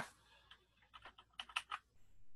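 Computer keyboard keys tapped in a quick, faint run of about ten keystrokes over a second and a half.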